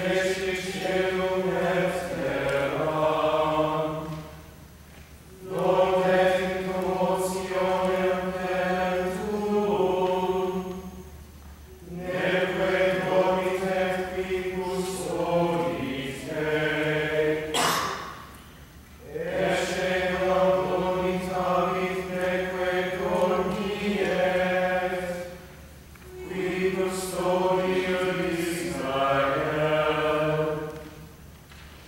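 Mixed group of men and women chanting Latin plainchant in unison and without accompaniment, in phrases of about five seconds with short pauses for breath between them.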